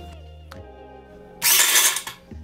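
A drink can with pennies inside, shaken by a small electric motor, rattles loudly for about half a second near the end, over quiet background music.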